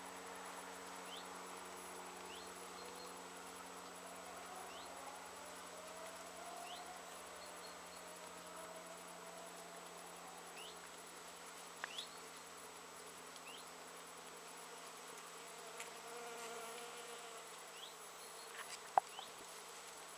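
Bees buzzing as they forage on flowering Japanese knotweed, a faint hum that rises and falls in pitch as individual bees fly past. Short high chirps recur throughout, and a few sharp clicks come about twelve seconds in and near the end, the last one the loudest sound.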